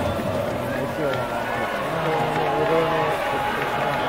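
Stadium crowd noise: many voices calling out over one another. Some voices hold sung notes for about a second midway through.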